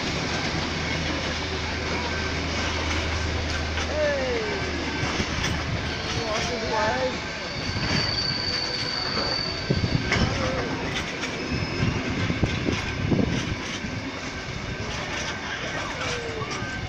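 Passenger train carriages rolling past at close range with a steady rumble. A thin high wheel squeal comes about eight seconds in, and a run of sharp wheel knocks follows a few seconds later.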